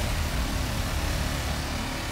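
Opening sound effect of a podcast intro jingle: a steady noisy whoosh over a low bass rumble, with no voice yet.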